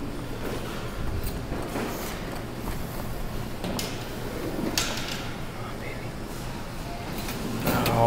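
Claw machine running as the claw is steered and lowered for a try at a plush toy: a steady low hum with scattered faint clicks and knocks, and one sharper click about five seconds in.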